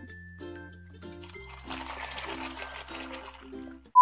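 Milk pouring from a plastic jug onto cereal, starting about one and a half seconds in and stopping just before the end, over quiet background music. A steady test-card beep starts right at the end.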